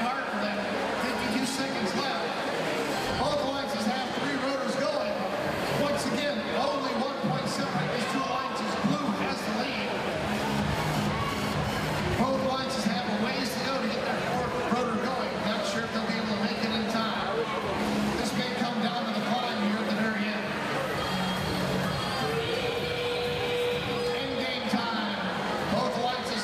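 Busy arena din: music over the public-address system mixed with a voice and crowd chatter, steady throughout.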